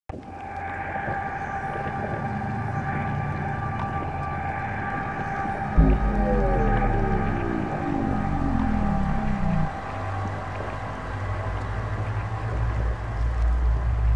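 Synthesized logo-intro music: sustained high electronic tones, then about six seconds in a sudden deep boom with a sweep of tones falling in pitch over some four seconds, settling into a steady low bass hum.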